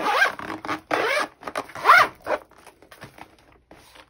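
Metal zipper of a faux-leather zip-around planner folio being pulled along its track in three rasping strokes, the last and loudest about two seconds in, followed by quieter handling of the folio.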